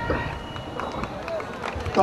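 Murmur of a large outdoor crowd with scattered voices and a few light knocks.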